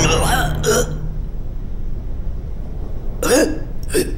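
Short wordless vocal sounds from an animated cartoon character: a couple of brief squeaky sounds just after the start, then more short sounds with a bending pitch about three seconds in, over a low steady hum.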